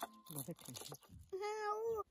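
A cat meowing once in a drawn-out call that cuts off suddenly, after some faint talk in the background.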